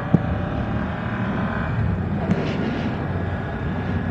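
BMW F900R's parallel-twin engine running under way at about 55–60 km/h, shifting up from second to third gear, under steady wind and road noise. A single sharp click comes just after the start.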